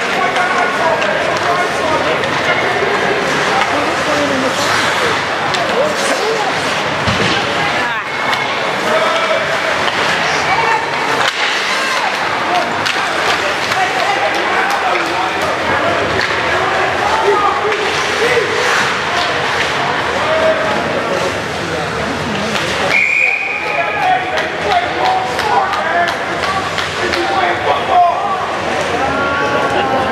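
Ice hockey game sounds: spectators chattering and calling out, with sticks, puck and skates clattering on the ice and boards. About three quarters of the way through comes a single high whistle blast about a second long, typical of a referee stopping play.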